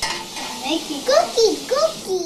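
A child making wordless, high-pitched playful vocal sounds: several short glides that swoop up and down in pitch.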